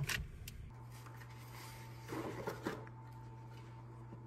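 Quiet room tone: a steady low hum that sets in under a second in, with a few faint handling or rustling sounds around the middle.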